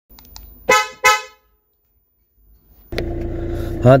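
Two short, loud toots of a Hyundai Creta's horn, about a third of a second apart, about three-quarters of a second in. A steady low hum with a constant tone begins about three seconds in.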